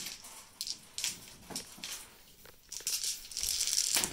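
A handful of six-sided dice clicking together as they are gathered up, then a dense clatter for about the last second as they are rattled and rolled onto a gaming mat.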